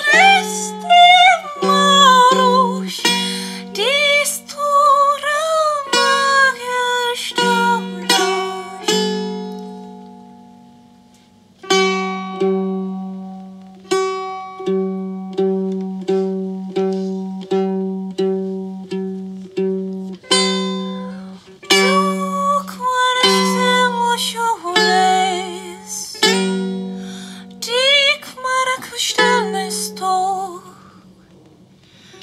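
Female voice singing with bending, wavering pitch over a plucked domra. About nine seconds in the voice stops, a note rings and dies away, and the domra then plays alone in evenly spaced plucked notes for about ten seconds before the singing comes back.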